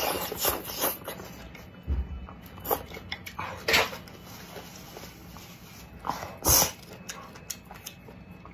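Close-up eating sounds: noodles slurped from a spicy soup and chewed, in a string of short wet slurps and mouth noises, the loudest about halfway and three-quarters of the way through, with a soft low thump early on.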